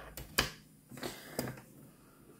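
A few short, sharp clicks and taps from scissors and cord being handled against a metal ruler on a tabletop, the loudest about half a second in.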